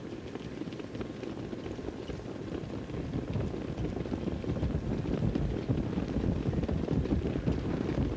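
Hoofbeats of a field of standardbred pacers pulling sulkies as they approach the start: a low rumble of many quick hoof strikes, growing steadily louder.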